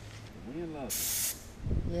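Gravity-fed paint spray gun giving one short hiss of compressed air about a second in, a brief pull of the trigger.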